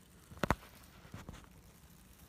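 Two sharp clicks in quick succession about half a second in, then a couple of faint ticks over a quiet background: handling noise.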